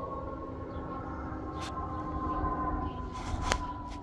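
A distant steady whine, siren-like, slowly falling in pitch over a low rumble, with a couple of short clicks.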